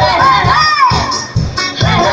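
Live band playing dance music with a steady drum beat, with loud voices shouting and singing over it.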